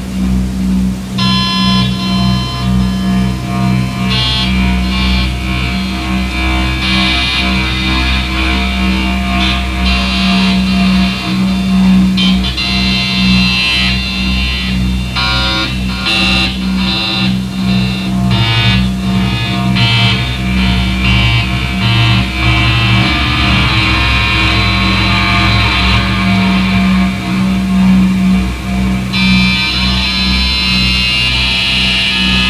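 Live electronic glitch-noise music: a steady low drone underneath stuttering, flickering high-pitched glitch textures that cut in and out.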